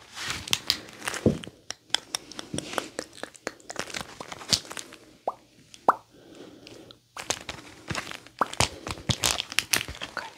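Shoes being taken off and handled for inspection: irregular clicks, taps and crinkles, with a quieter stretch just past the middle.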